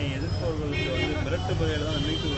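Faint voices of other people talking, over a low steady rumble.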